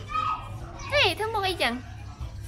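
A child's high-pitched voice making a few short sounds that swoop up and down in pitch, without clear words, loudest about halfway through.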